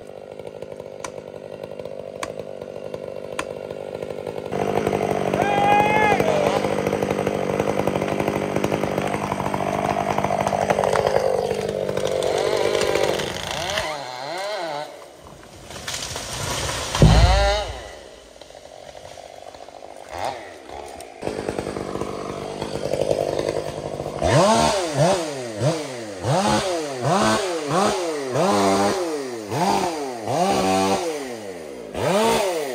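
Chainsaw felling a large redwood: the saw runs under load through the cut, then stops, and about 17 seconds in the tree hits the ground with a heavy thud, the loudest sound. Near the end the chainsaw is revved again and again in quick blips.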